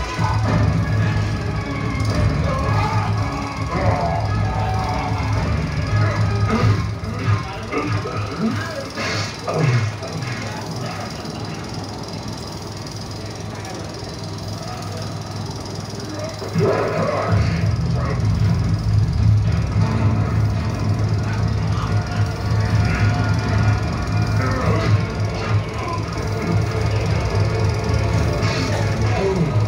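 A film soundtrack playing over an open-air cinema's loudspeakers: music with voices. A steady low drone runs underneath, dropping away for several seconds in the middle and coming back about two-thirds of the way through.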